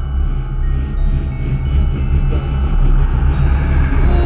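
Electronic music: a loud, low rumbling drone with a noisy wash above it and a few faint held tones, swelling gradually louder.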